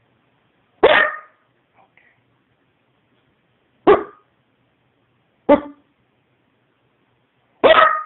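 A corgi barking four single, sharp barks at irregular gaps of about one and a half to three seconds.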